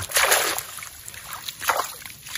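Water splashing and sloshing as a folding mesh cage trap is hauled through shallow muddy water. There is a strong burst at the start and a shorter one near the end.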